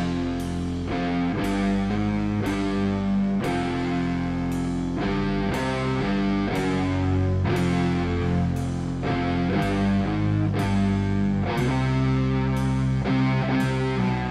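Live heavy rock trio playing an instrumental passage: distorted electric guitar and bass holding chords that change about once a second, with drums and a cymbal crash on nearly every change.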